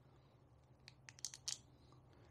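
Near silence, broken about a second in by a few faint crinkling clicks from a plastic tire-sealant bottle being squeezed by hand.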